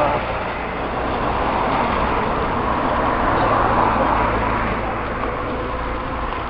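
A motor vehicle passing on the road beside a walking crowd. Its engine and tyre noise swells to a peak about three to four seconds in and then eases off, over a low murmur of voices.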